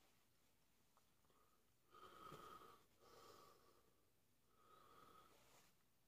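A man breathing hard through pursed lips against the burn of a freshly eaten Carolina Reaper pepper. There are three faint, drawn-out breaths, each with a slight whistle, the first about two seconds in.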